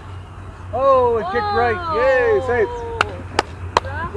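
A voice calling out in long, drawn-out, gliding tones just after a golf tee shot, then three sharp knocks about 0.4 s apart near the end.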